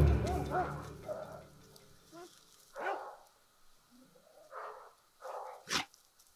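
A large dog gives a few short, quiet whines and snorts, scattered through the seconds, while music fades out at the start. A sharp click comes near the end.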